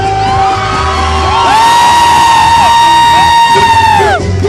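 Live concert music from a stage sound system, with a bass beat early on giving way to a long held high note through the second half, and the crowd whooping.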